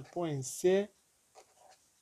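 A voice speaking for about the first second, then the faint scratch of a pen writing figures on paper, about a second and a half in.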